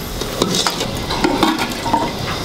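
Metal ladle stirring and scraping in an aluminium cooking pot of hot liquid, with irregular light clicks and clinks of metal on metal.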